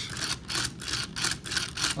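Plastic toy drill on a Transformers Cybertron Menasor figure being slid back and forth by hand, its mechanism rotating the drill and giving off a quick, uneven run of clicks, several a second.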